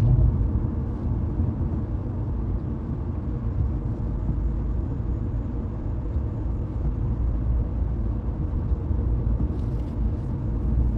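Steady low rumble with no speech or music.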